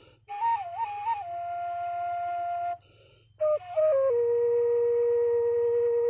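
Background music: a flute melody that stops briefly about three seconds in, then settles on a long held note.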